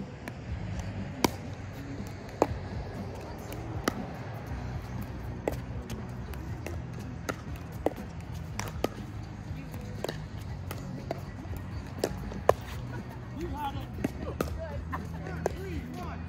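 Pickleball rally: paddles striking a hollow plastic ball, with its bounces on the hard court, making sharp single pops roughly a second apart. A soft, low background of music runs underneath.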